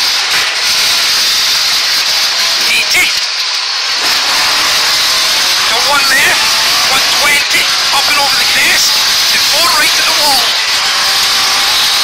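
Mk2 Ford Escort rally car's Pinto four-cylinder engine heard from inside the cabin under hard acceleration, with a loud steady hiss of road and wind noise. The engine briefly lifts about three seconds in, then its revs climb and drop again several times through the second half.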